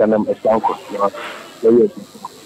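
A person speaking in short phrases, with brief pauses between them.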